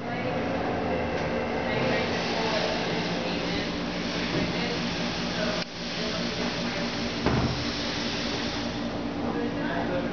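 Motorcycle engine idling steadily, with a brief dull knock about seven seconds in.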